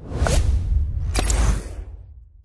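Logo-animation sound effects: a swoosh over a deep low rumble, with a short bright hit a little over a second in, fading out near the end.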